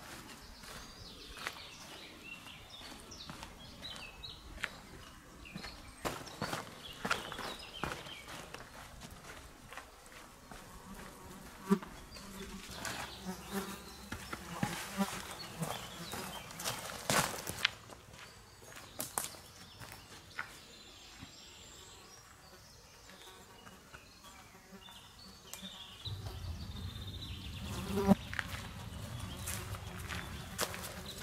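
Footsteps of a hiker climbing rocky forest steps: irregular boot scuffs and knocks on stone and earth. An insect buzzes close by for a few seconds in the middle, and a low rumble starts near the end.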